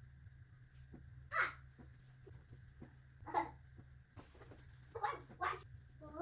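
A young child babbling faintly in short bursts, four brief vocal sounds, over a steady low hum.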